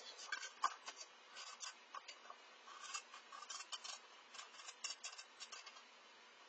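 A stir stick scraping and clicking against a small plastic cup while mixing tinted epoxy resin: a quiet run of quick, irregular ticks and scrapes.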